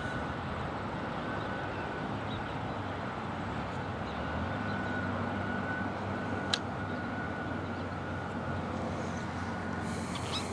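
Steady outdoor background noise with a low engine-like hum that grows a little stronger about four seconds in, and one sharp click about six and a half seconds in.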